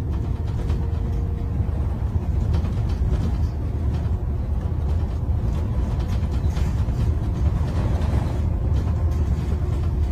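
Steady low rumble of a moving tram-style transit vehicle heard from inside its passenger cabin, with a faint steady whine over it.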